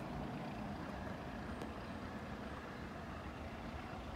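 An LMS Stanier 'Black Five' steam locomotive approaching from a distance: a steady low rumble without separate exhaust beats.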